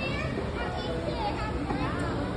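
Indistinct chatter of voices, children's among them, over the general background noise of a busy indoor space.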